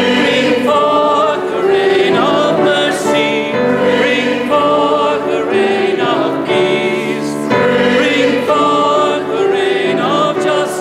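Opening hymn sung by the choir and standing congregation, with pipe organ accompaniment: several voices holding long notes, phrase by phrase, with short breaths between phrases.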